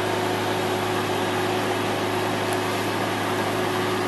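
Porsche 911 Turbo's flat-six idling steadily: an even hum and hiss with a faint constant tone, unchanging throughout.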